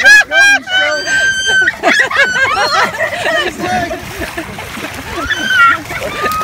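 Several people yelling, laughing and shrieking without words, with a long high shout about a second in, while water splashes around them as they wrestle in shallow water.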